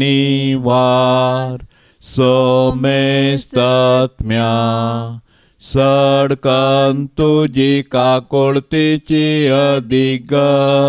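A man's voice singing a slow devotional hymn in long, steady held notes. The phrases break with short pauses, and the notes come quicker and shorter in the second half.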